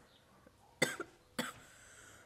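A woman coughing twice, two short coughs about half a second apart, from the blunt smoke she has just exhaled.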